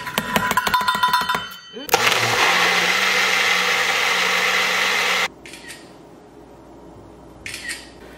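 A Magic Bullet personal blender blending a smoothie: a loud, steady run of about three and a half seconds that starts and stops abruptly. It is preceded by a second or so of rapid clattering and rattling.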